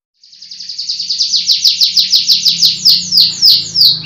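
Domestic canary singing: a fast trill of repeated downward-sweeping high notes that starts quietly and quickly grows loud, the notes slowing and lengthening toward the end.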